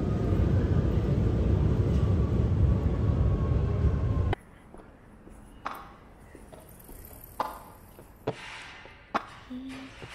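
A loud, steady rumbling noise with a faint high whine, cutting off suddenly about four seconds in. After that comes much quieter city-street ambience with a few sharp clicks.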